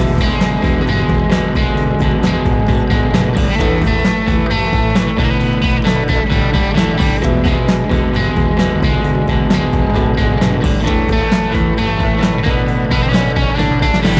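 Instrumental passage of a rock song: the full band comes in abruptly and plays loud and steady, with no vocals.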